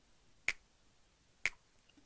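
Finger snaps, two sharp clicks about a second apart, keeping a steady beat as a count-in for singing.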